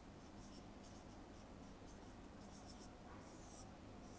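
Faint scratching of writing, a run of short strokes one after another, the longest a little after three seconds in.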